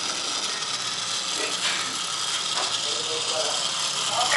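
Small DC motor of a model solar airboat spinning its plastic propeller fan, running steadily.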